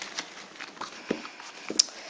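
Bicycle playing cards being gathered up by hand from a loose spread and squared into a deck: a scatter of light, irregular clicks and card-on-card slides.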